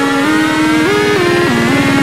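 Electronic dance remix music: a synth lead melody gliding between notes over a fast, buzzing low pulse, with a tone slowly rising in pitch underneath.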